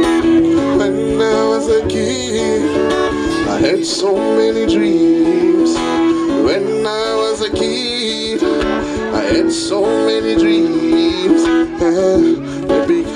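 Acoustic guitar played live, with a man singing over it.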